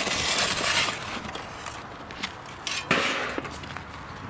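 A shovel scraping and chunks of hardened sodium silicate sand crumbling and clattering as a casting mold is broken out of a wooden flask, with a sharp knock about three seconds in.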